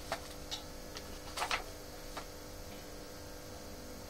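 A few faint, irregularly spaced ticks and clicks over a steady low hum, the strongest about a second and a half in.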